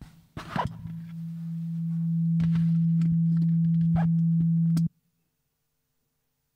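A steady low hum from the church sound system, set off by a few handling clicks on the handheld microphone. The hum swells over a couple of seconds, holds, and then cuts off suddenly, as the microphone channel goes dead.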